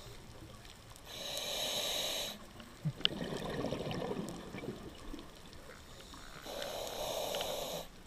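A scuba diver breathing through a regulator: two hissing inhalations, about a second in and again near the end, with a stretch of burbling exhaust bubbles between them and a sharp click about three seconds in.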